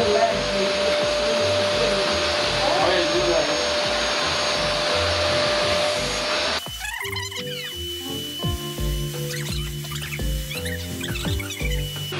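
A household vacuum cleaner running steadily, with a constant whine, as its hose nozzle is drawn over a horse's coat. About six and a half seconds in it cuts off suddenly and background music with a steady beat plays.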